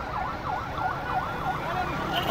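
An electronic vehicle siren sounding a fast yelp, its pitch swooping down and back up about four times a second, over a low rumble of traffic.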